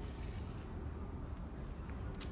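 Athletic tape being pulled off the roll and stretched taut over the foot, a brief faint crackle about half a second in and a short click near the end, over a steady low background rumble.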